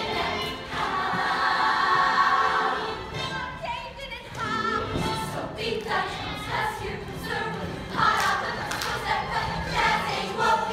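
A large youth ensemble singing a musical theatre number together, many voices in unison, with louder held notes about a second in and again near the end.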